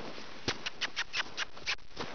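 A quick, uneven run of about seven crunching steps in packed snow, coming in just over a second and stopping shortly before the end.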